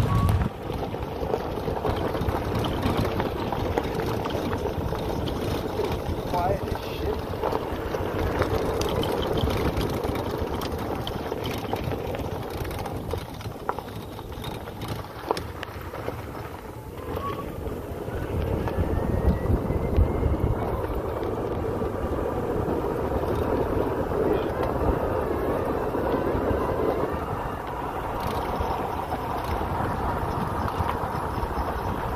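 Golf cart driving along a gravel road: steady tyre and body noise with a low rumble, growing somewhat louder in the second half.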